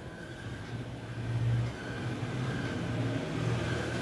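A low, steady engine-like rumble that swells briefly about a second in and then settles back.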